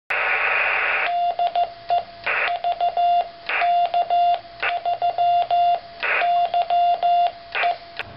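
Morse code sidetone from a radio keyed by a homemade brass-clip CW keyer paddle: a steady tone of about 700 Hz sent in dots and dashes. Bursts of hiss fill the pauses between groups of characters.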